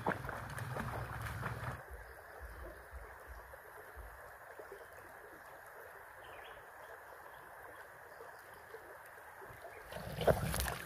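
Shallow rocky creek running over stones: a steady, even rush of water. For the first couple of seconds it is louder, with a person splashing in the creek and a low rumble, before an abrupt change to the plain stream sound.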